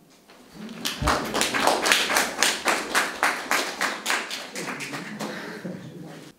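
A small audience clapping: quick, even claps start about a second in and die away near the end, with a low thump at the first claps.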